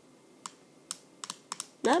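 Short sharp plastic clicks, about half a dozen at irregular spacing, from the steering wheel of an Air Hogs Hyperactives 5 pistol-grip remote controller being worked by hand.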